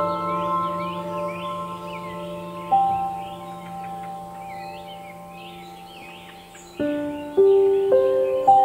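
Calm ambient background music of held, bell-like notes that fade slowly, with new notes struck about three seconds in and near the end, and bird chirps layered over it throughout.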